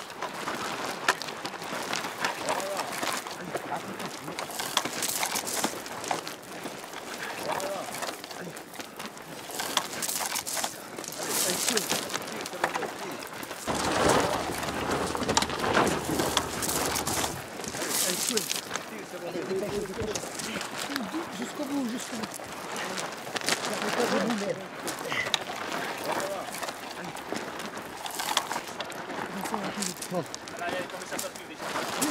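Soldiers crawling under barbed wire over stony ground: continuous scraping and scuffing of gravel and uniform fabric, with men's voices calling out now and then.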